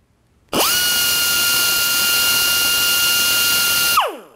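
Husky air die grinder run free at full throttle, spinning about 21,000 RPM. It starts about half a second in, its pitch rising quickly to a steady high whine over a loud hiss of air. Right at the end the trigger is released and the whine falls in pitch as the grinder spins down.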